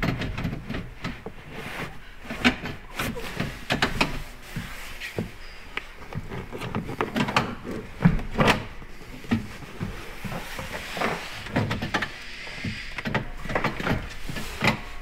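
Double front bench seat being swivelled round on a bolt-in swivel base plate: irregular clunks, knocks and scraping from the seat frame and plates, with the sharpest knocks about two and a half seconds in and about eight seconds in. The turn is stiff, which the fitter puts down to the bottom nut joining the two swivel plates being done up a little too tight.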